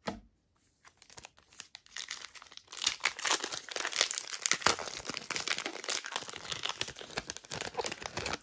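A trading-card pack's shiny plastic foil wrapper being torn open and pulled apart by hand. It makes a crinkling crackle that starts sparse and grows dense and continuous about three seconds in.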